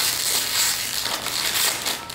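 A crinkly snack bag being pulled open by hand, rustling and crackling without a break.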